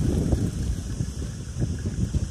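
Wind noise on a hand-held phone's microphone while walking: an uneven low rumble.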